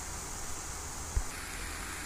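Food sizzling in olive oil in a non-stick frying pan, a steady hiss: diced bell pepper and red onion, then ground calabresa sausage and bacon, with a slight change in the hiss a little over a second in. A single low knock comes just before that change.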